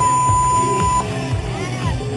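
A steady, high electronic beep lasting about a second at the start, over rock music with singing and a steady beat.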